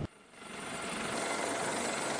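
Z-9 shipborne helicopter on a ship's flight deck with its rotors turning, a steady rushing rotor and turbine noise with a faint high whine. It fades in from near silence just after the start and holds steady.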